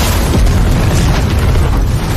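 Cinematic explosion sound effect: a loud, continuous deep rumble of a fiery blast, with no separate hits.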